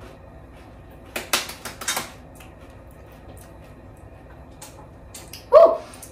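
A person tasting hot homemade salsa on a tortilla chip: a few short, sharp mouth sounds about a second in, then a brief voiced exclamation near the end as the heat hits.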